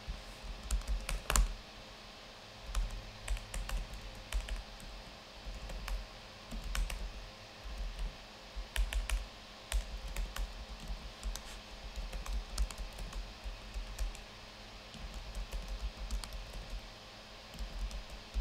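Computer keyboard typing in short bursts with pauses between them, the keys clicking.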